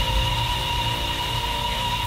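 Cinematic transition sound effect: a deep rumbling drone with a few thin, steady high tones over a hiss, slowly fading.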